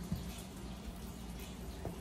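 Faint, wet stirring of a chickpea salad with a spatula in a stainless steel bowl, with two soft knocks of the spatula against the bowl, one just after the start and one near the end.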